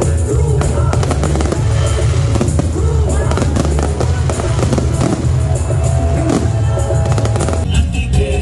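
Loud music with a heavy bass, with fireworks crackling and popping densely over it.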